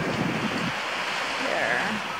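Small waves washing onto a sandy shore, with wind buffeting the microphone.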